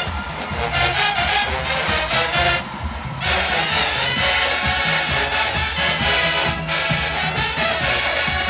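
HBCU show-style marching band playing: full brass with drums, loud and continuous. The music briefly drops back about three seconds in.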